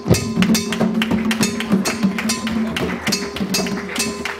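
Live music of rope-tuned hand drums played with bare hands: a fast, uneven run of sharp strikes over a sustained low tone.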